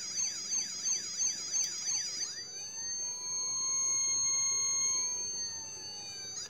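Battery-powered toy fire truck's electronic siren, faint with its batteries running low: a fast warble for about two seconds, then a switch to a steady electronic tone that holds to the end, which the owner guesses is a backup alarm.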